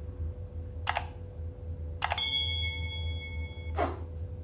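Subscribe-button animation sound effects: a mouse click about a second in, then a second click about two seconds in followed by a bell-like ding that rings for under two seconds, and a short swish near the end, over a steady low hum.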